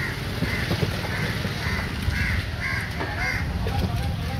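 Crows cawing repeatedly, with about six short calls roughly half a second apart, over a low steady background rumble.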